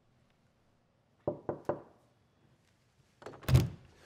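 Three quick knocks on a wooden apartment door, then a louder clack of the latch and the door being pulled open near the end.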